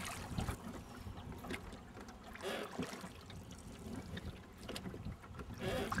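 Wooden oar blades dipping into and pulling through the water of a rowing boat, a soft splash and swirl with each stroke, the strokes coming a couple of seconds apart.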